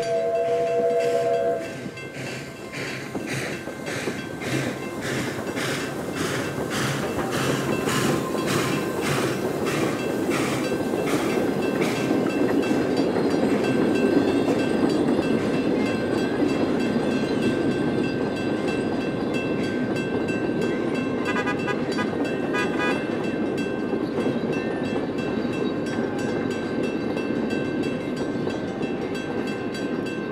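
NGG16 Garratt steam locomotive's whistle sounding one short chord, then the locomotive passing with a regular beat about twice a second. The lit carriages follow in a steady rolling rumble.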